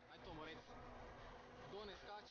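Faint, indistinct human voices, coming in short stretches about half a second in and again near the end.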